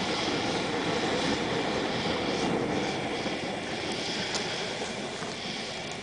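Woodgas stove burning hard: a steady roar of wood gas flaring out from under the kettle, easing a little toward the end.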